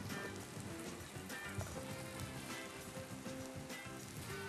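Hot oil sizzling steadily around diced eggplant frying in a pan, with quiet background music.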